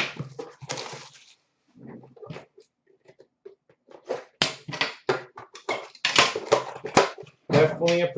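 Quick, irregular rustling and clicking of cards and packaging being handled, sparse at first and dense from about halfway through.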